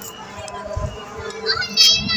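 Children's voices in the background, with a short high-pitched child's call near the end.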